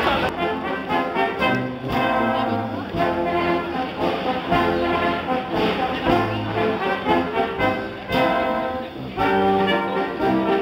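A brass sextet, trombone among the instruments, starts playing a tune together right at the beginning, in phrases of held notes.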